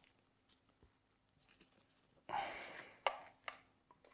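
Hand trigger sprayer spraying wheel cleaner: one short hiss of spray about two seconds in, followed by two sharp clicks.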